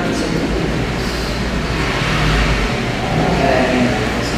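Quiet, indistinct talk over a steady low rumble and hiss. The rumble is heaviest in the first half.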